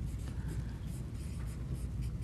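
Dry-erase marker writing on a whiteboard: a run of soft, short strokes as a word is written out.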